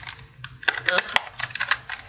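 Quick, irregular clicks and crackles of packaging being worked by hand as a roll of washi tape is pried out of it, several a second, starting about half a second in.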